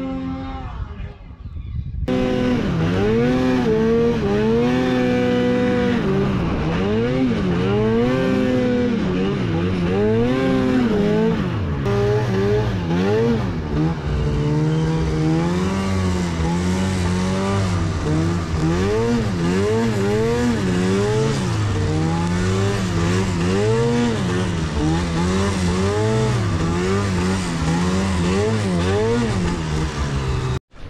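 Arctic Cat Catalyst snowmobile's two-stroke engine, close up, revving up and down again and again as the throttle is worked through deep snow. A steady held note opens, and the revving begins after a brief break about two seconds in.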